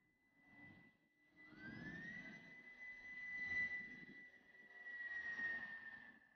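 A high mechanical whine that rises in pitch, then holds steady for several seconds over a low rumble.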